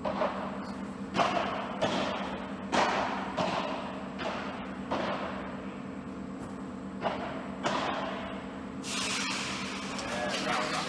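Padel rally: a padel ball struck by solid padel rackets and bouncing off the court and glass walls, heard as a series of sharp hits at irregular intervals of roughly half a second to two seconds.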